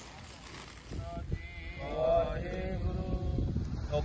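A voice chanting a prayer, coming in about a second in with drawn-out, wavering held notes.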